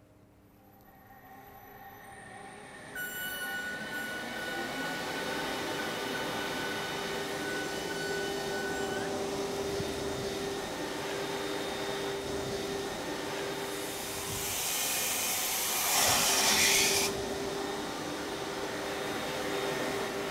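Water pump on a valve test rig starting up, its noise building over the first three seconds, then running steadily with a constant hum and whine. About fifteen seconds in, a louder rushing hiss rises over it for about two seconds, then dies back to the steady running.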